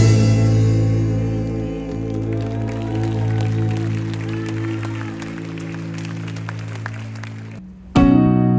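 Live band holding a final sustained chord that slowly fades as the song ends, with scattered audience clapping over it. The sound cuts off abruptly just before the end.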